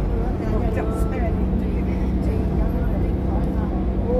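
Steady road and engine noise inside the cabin of a moving passenger van, a low rumble with a steady low hum.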